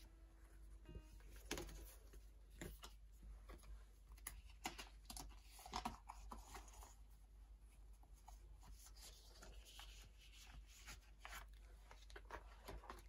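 Faint rustling and scraping of plastic binder sleeves as postcards are slid into the pockets of a binder page, with small clicks and rubs at irregular moments.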